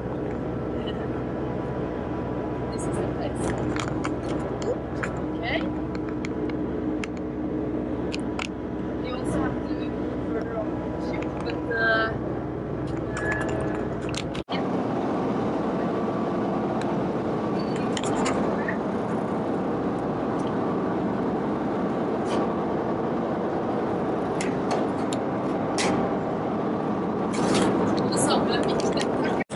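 Steady hum of a research trawler's engines and deck machinery, several held tones under indistinct voices; about halfway through the deep rumble drops out suddenly and a brighter machinery hum carries on.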